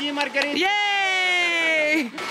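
A person's voice: a couple of quick words, then one long drawn-out vocal call held for about a second and a half, its pitch slowly falling.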